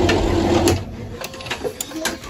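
Epson EcoTank ET-16600 printer's mechanism running through a print-head cleaning cycle: a steady motor whir that stops less than a second in, followed by a few light clicks.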